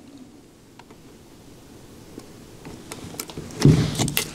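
Quiet handling of a small plastic LED dimmer controller and its cord, with a rustle building near the end, then a single thump as the controller is pressed onto the printer enclosure's side panel with its adhesive tape.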